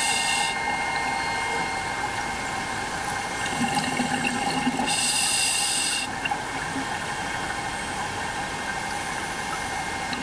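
Scuba diver's breathing heard underwater: bursts of exhaled bubbles from the regulator, one ending just after the start and another about five seconds in, over a steady underwater hum.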